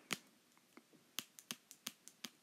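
A string of faint, sharp little clicks or taps at an irregular pace, about eight of them, coming closer together in the second half.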